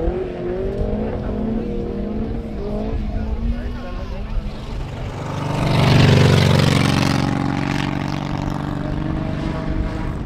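Folkrace cars racing on a dirt track, their engines revving and shifting pitch up and down through the gears. About six seconds in the engine sound swells to its loudest as a car passes nearer, then eases off.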